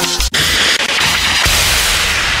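Produced transition sound effect: the music cuts out sharply for an instant, then a loud, sustained noisy whoosh sweeps in over low thuds.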